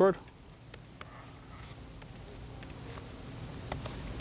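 Faint, irregular clicks of laptop keys being typed as a username and password are entered, over a low room hum.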